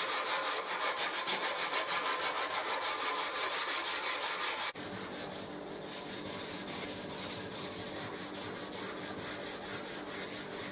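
Hand smoothing of a wooden mandolin neck, rapid even back-and-forth abrasive strokes rubbing on the wood, several a second. About halfway through the strokes drop a little softer and less regular.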